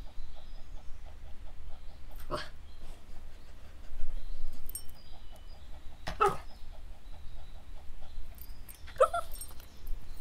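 A dog making three short vocal sounds, about two and a half, six and nine seconds in, the last one rising in pitch. A faint run of soft, quick ticks sounds between them.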